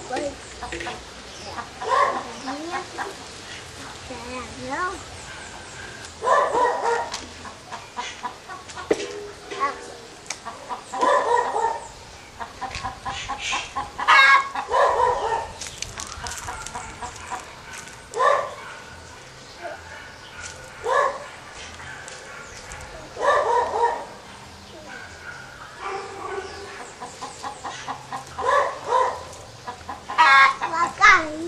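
Chickens clucking, with rooster crows among them: short pitched calls that come back every few seconds.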